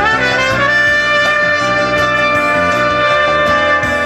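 Trumpet playing a solo line over acoustic guitar and band accompaniment: a phrase that slides up near the start into a long held note.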